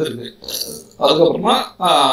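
A man speaking in Tamil, explaining a worked problem.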